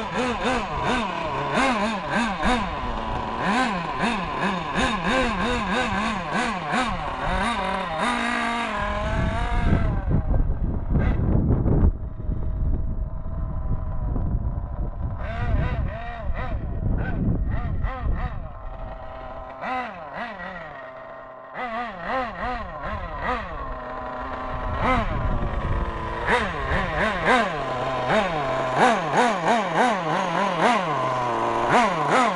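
Kyosho Inferno Neo 1/8 nitro buggy's two-stroke glow engine running during break-in, close by, its pitch wavering up and down. About nine seconds in it revs up and the buggy drives off, heard farther away with revs rising and falling, then close again near the end.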